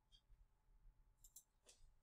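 Near silence with a few faint, short clicks about a second and a quarter in and again near the end.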